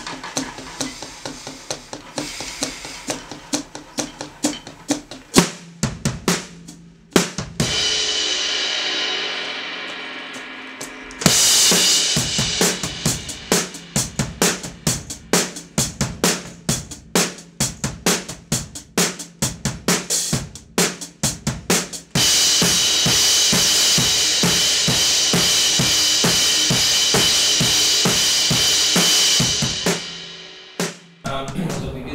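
Drum kit played in a steady beat of kick and snare. About seven seconds in, a cymbal crash rings out and fades over a few seconds. The playing comes back in harder around eleven seconds, and from about twenty-two seconds a continuous cymbal wash rides over the beat.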